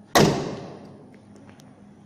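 A Ford Figo's bonnet slammed shut: one loud slam just after the start, dying away over about half a second.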